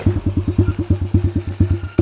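Chinese 125cc dirt bike engine idling with an even putter of about a dozen beats a second, fading as the engine is shut off near the end.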